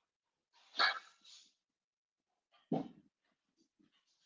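A dog giving two short barks, about two seconds apart.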